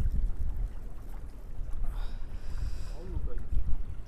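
Wind buffeting the microphone: a low, gusty rumble, with a faint high whine about halfway through.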